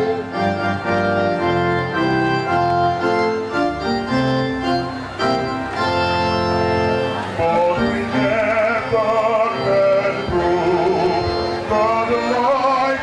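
Church choir music with a keyboard organ playing steady held chords. A little past halfway, a singer's wavering voice comes in strongly over the chords.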